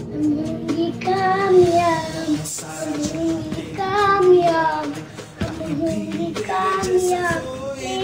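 A young boy singing, his voice held in drawn-out notes that slide up and down, with short breaths between phrases.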